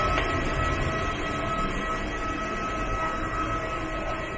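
Steady machinery drone with a high whine held at several steady pitches, from a parked airliner and its jet bridge at the aircraft door. The whine fades out at the very end.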